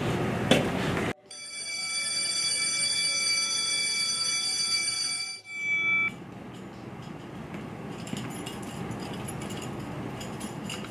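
An electronic school bell sounds: a steady chord of several high tones held for about five seconds, starting about a second in and cutting off abruptly around six seconds. Low room noise follows.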